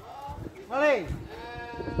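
A man's voice through a PA microphone: a short, loud call that rises and falls in pitch about three-quarters of a second in, then a long drawn-out vocal sound that runs into "halo, halo" as a microphone check.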